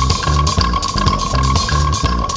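Instrumental rock band playing live: a repeating bass guitar line and drums, with a wooden percussion instrument struck with a stick, and a steady high tone held underneath.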